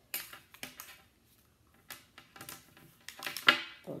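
Scattered light clicks and rustles of a phone charger and its cable being handled at a leather handbag, with a denser cluster of handling noise near the end.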